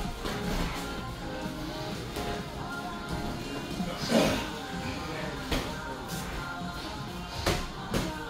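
Background music with steady held notes, broken by three sharp knocks, the loudest about halfway through.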